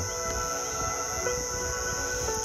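Crickets chirring in a steady high-pitched trill, over soft sustained background music.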